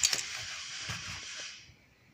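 A few light clicks and taps of hands and tools on parts in an engine bay, over a steady hiss that fades out after about a second and a half.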